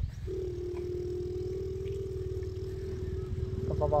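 A child's voice holding a steady, single-pitched hum as a mouth-made truck engine noise, breaking into quick engine-like syllables near the end, over a low rumble.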